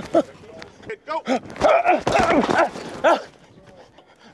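Short wordless shouts and grunts from a man's voice, close on a body-worn microphone, with a longer, rougher call in the middle.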